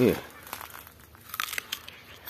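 Dry ber bush leaves and twigs rustling and crackling in scattered small bursts.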